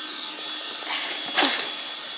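Steady high-pitched whine of a power tool running in the background, with a brief rustle about a second and a half in.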